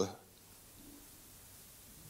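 A man's amplified speech cutting off right at the start, then near silence: quiet room tone with a faint low murmur.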